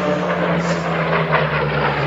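Aircraft engine drone, steady and even, mixed over a choral recording.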